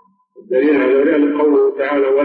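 A man's voice speaking, starting after a short pause of about half a second. The pitch is held in long, level stretches.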